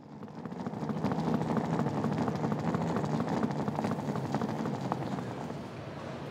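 Airport terminal background noise fading in: a steady low hum with many scattered short clicks and knocks.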